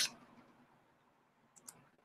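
Near silence in a small room after a man's voice cuts off at the start, with one faint short click near the end.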